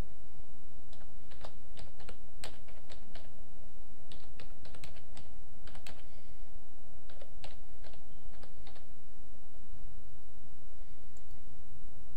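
Computer keyboard typing: a run of key clicks that stops about three quarters of the way through, over a steady low hum.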